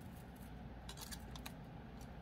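Faint handling of thin jewelry wire on a metal hoop strung with glass seed beads: a few small light clicks and ticks about a second in as the wire is pulled through and wrapped.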